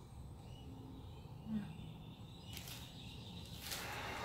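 A low background hum, then near the end a corded heat gun comes on and runs with a steady blowing noise as it is passed over the wet resin.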